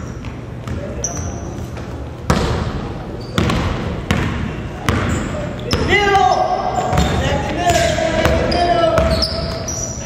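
A basketball bouncing on a hardwood gym floor during play, each bounce a sharp knock that echoes in the large hall. Short high squeaks run through it, and players' voices call out in the background.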